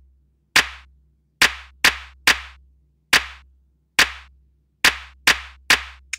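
Sparse electronic music: nine sharp, clap-like percussion hits in an uneven rhythm, each fading quickly, over a steady low sub-bass tone.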